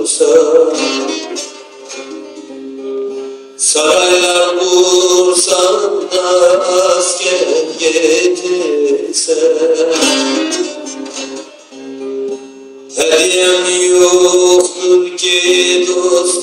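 Bağlama, the long-necked Turkish lute, played live through a microphone: loud strummed passages, easing off twice to quieter held notes before the strumming comes back in suddenly.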